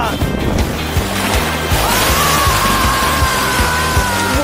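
Background music with a steady beat under a loud rushing whoosh. About halfway through, a long high cry comes in and is held to the end.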